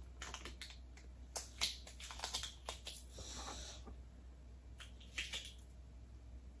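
Faint handling sounds of taping an item inside a paper gift bag: scattered light clicks and taps, with a short rasp of tape a little past three seconds in.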